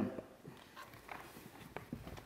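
Faint, scattered light taps and rustles of paper being handled on a wooden lectern, as pages are turned and shifted.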